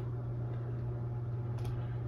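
A steady low hum, like room or equipment hum, with one faint click near the end.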